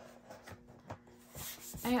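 Hands handling a plastic clipboard on a cutting mat: a few light clicks and taps, then a brief rubbing slide near the end.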